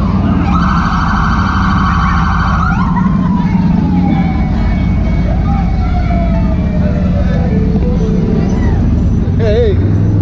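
A siren holding a high tone for a couple of seconds, then winding slowly down in pitch over several seconds, with a brief wavering tone near the end. Underneath runs the steady low drone of a Can-Am side-by-side's engine.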